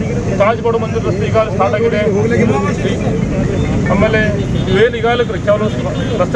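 A man speaking in Kannada, with a low, steady rumble of road traffic underneath.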